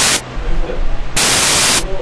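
Loud bursts of static hiss over a steady electrical hum, a recording or interference noise. One burst cuts off just after the start and another lasts most of a second from about halfway through.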